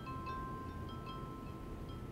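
Faint electronic chime: soft ringing notes at several pitches, struck a few times and overlapping as they ring on.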